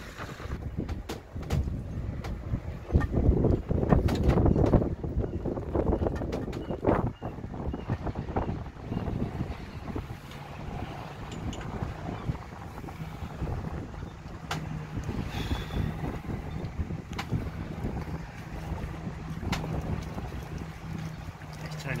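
Wind buffeting the microphone, gusting hardest in the first several seconds, with scattered clicks and knocks from the crane-truck hoist and its lifting straps as the boat is lowered into the water. From about halfway a steady low mechanical hum sets in under the wind.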